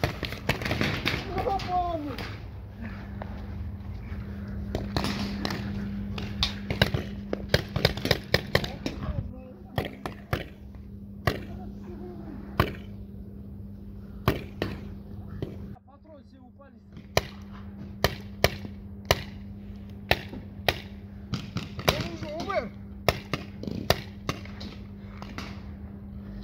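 Paintball markers firing during a game: sharp, irregular pops, some single and some in quick strings, scattered through the whole stretch.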